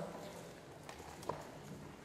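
Paper and book pages handled on a pulpit close to its microphone: soft rustling with a few light clicks, two sharper ticks about a second in.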